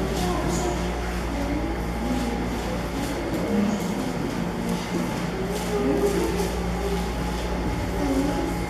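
A steady low hum runs through the room. Over it are faint rustles of Bible pages being turned and soft, low murmuring.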